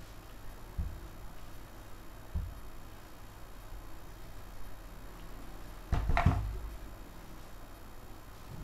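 Electric iron being pressed and shifted on fabric over a padded table to fuse iron-on interfacing, with a couple of soft knocks, then a louder short clatter about six seconds in as the iron is lifted and set down.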